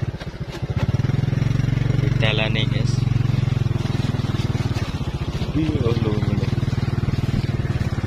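Motorcycle engine running at steady low revs as the bike is ridden along a rutted dirt track, its note picking up slightly about a second in.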